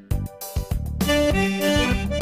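A few short clicks, then about a second in an accordion and an electronic keyboard start together on held chords, the opening of a song.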